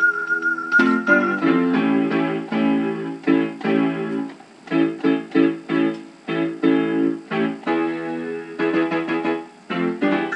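Piano playing a song: a held high note, then a quick run of chords, then separate chords struck about twice a second and left to ring.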